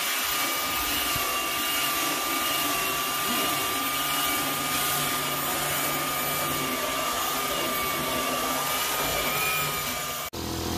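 A corded belt sander runs steadily on the top of a 2x4 wooden bench, sanding down its high spots to level it. It is a constant grinding rush with a steady motor whine.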